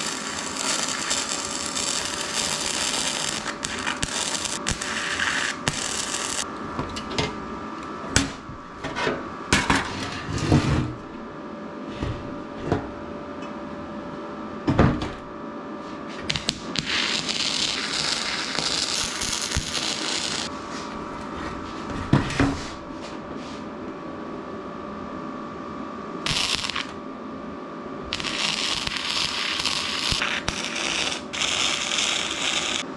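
Wire-feed (MIG) welder running in bursts of several seconds on thin 22-gauge sheet steel, a steady hiss. In the pauses between welds come a few sharp metal knocks as the panel is handled.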